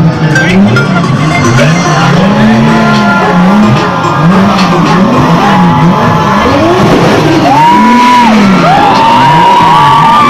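Sports car engines being revved again and again, the engine note rising and falling about once a second. Long high-pitched tones join in over the last few seconds.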